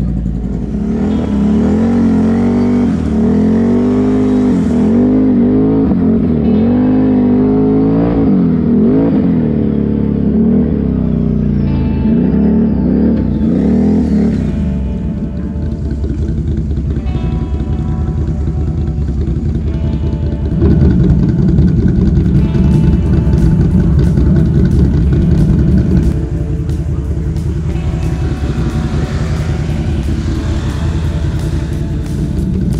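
ATV engine revving up and down as it ploughs through a flooded mud trail, with background music playing over it.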